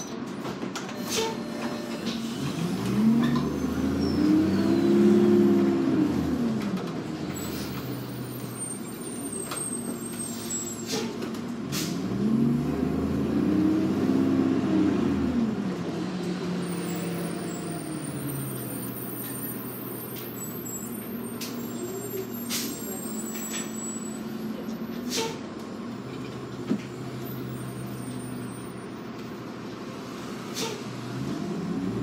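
Diesel engine of a New Flyer D40LF transit bus, heard from inside the cabin, rising in pitch and then falling away twice as the bus pulls ahead and eases off in stop-and-go traffic, with a steady engine drone between and a few short clicks and rattles.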